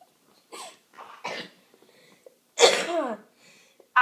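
A person stifling laughter: short muffled bursts of breath, three of them, the loudest about two-thirds of the way in.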